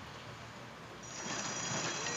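Starting-gate bell at a thoroughbred race: a steady high ringing that starts about a second in, as the gate doors open and the field breaks, over low background noise.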